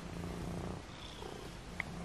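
Domestic cat purring while being stroked, a steady low purr with a brief dip about a second in. A short click sounds near the end.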